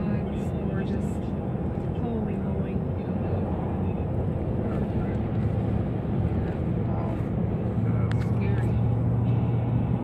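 Car driving at road speed, heard from inside the cabin: a steady low rumble of road and engine noise.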